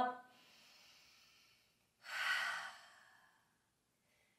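A woman breathing: a faint breath in, then an audible breath out through the mouth about two seconds in, fading over a second and a half.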